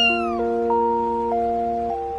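A kitten gives one short meow near the start, rising and then falling in pitch. Background music of held chords plays under it and runs on throughout.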